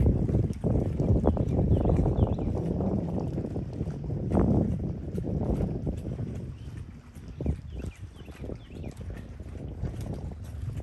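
Wind buffeting the microphone, loudest in the first half and easing after about six seconds, with scattered light knocks.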